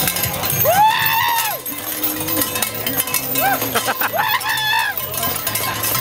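High whooping yells of cheering, three of them, each rising and falling in pitch: about a second in, near the middle, and a longer one at about four seconds. Light metallic clinking and background music with a bass line run underneath.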